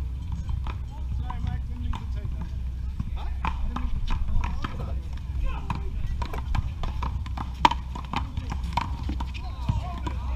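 One-wall paddleball rally: solid paddles striking the small rubber ball and the ball hitting the concrete wall and court, an irregular series of sharp cracks, the loudest about three-quarters through.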